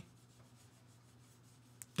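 Faint room tone with a low steady hum, and one brief click near the end.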